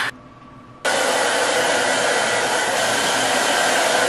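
Handheld hair dryer running, a steady rush of air that starts suddenly a little under a second in and holds even.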